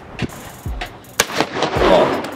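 Shotgun shots at a clay-shooting range: several sharp reports, the loudest blast near the end ringing out with a long echo.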